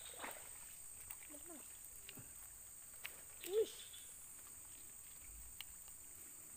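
Quiet outdoor background with a steady high-pitched whine. Two short rising-and-falling voiced sounds break it, a faint one about one and a half seconds in and a louder one about three and a half seconds in.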